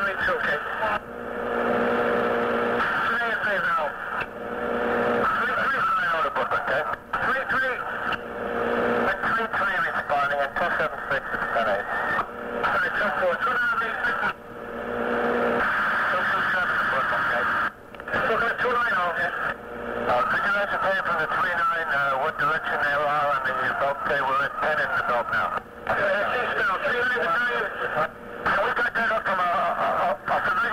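Fire department dispatch radio traffic: garbled, unintelligible voices through a narrow-band two-way radio, broken by several brief squelch drop-outs between transmissions. A low steady hum sits under some transmissions.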